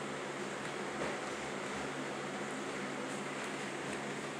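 Steady hiss with a faint low hum and no distinct events: room tone.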